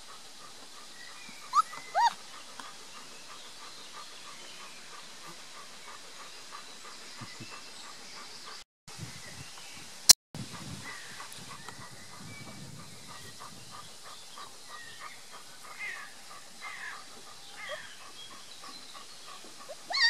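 Three-week-old Beauceron puppies whimpering in short, high squeaks: two loud ones a couple of seconds in and several softer ones near the end. A single sharp click about halfway through.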